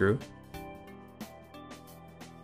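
Soft, slow instrumental background music with gentle sustained notes, following the last word of a man's narration.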